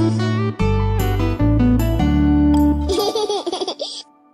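Upbeat children's song music with a steady bass line, ending about three seconds in, then cartoon children laughing.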